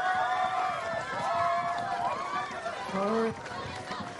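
Studio audience of students cheering and shouting together, many high voices overlapping and held.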